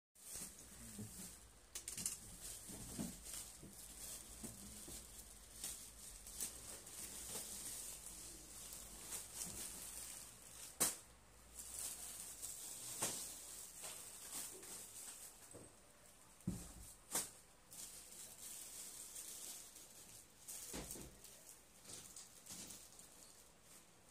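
Fairly faint rustling and crinkling of plastic parcel packaging being handled, as irregular crackles with a few sharper clicks.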